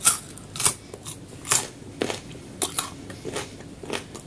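Close-miked chewing of a crisp mouthful, with about eight sharp crunches spaced unevenly across a few seconds.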